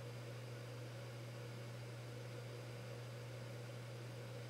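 Low, steady background hum with a faint even hiss, unchanging throughout: room tone with electrical or equipment hum.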